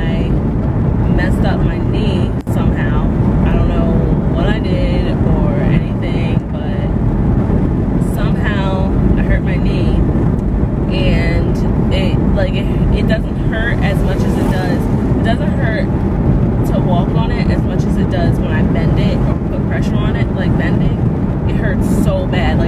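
A woman's voice over the steady road and engine noise of a moving car, heard from inside the cabin.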